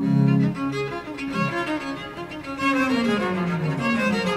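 Baroque chamber ensemble of violin, viola da gamba and chamber organ starting the instrumental opening of a cantata: a loud first chord, then busy string figures over a bass line stepping downward.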